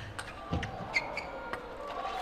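Table tennis ball clicking off rackets and bouncing on the table during a fast rally: a few sharp clicks in the first second or so, then they stop as the point ends.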